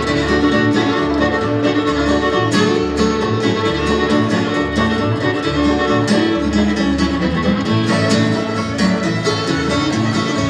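Bluegrass string band playing an instrumental: fiddle, banjo, acoustic guitar and upright bass together, with the bass notes keeping an even beat underneath.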